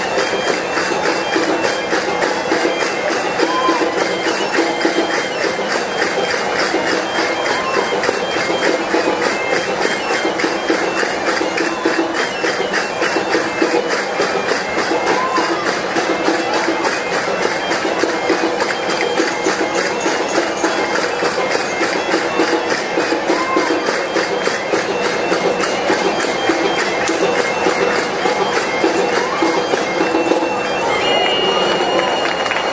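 Traditional music played on bagpipes over a steady held drone, with a fast, even drumbeat.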